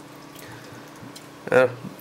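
Chemical tinning solution pouring from a bottle into a plastic tub onto a circuit board, a faint trickle of liquid.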